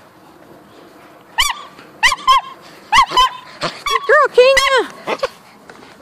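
Dogs barking and yipping in about ten short, high calls, starting about a second and a half in.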